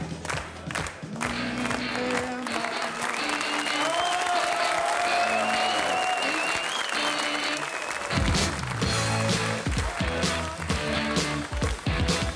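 The end of a song with a held closing note, met by studio audience applause. About eight seconds in, a rock band starts playing, with drums and bass guitar.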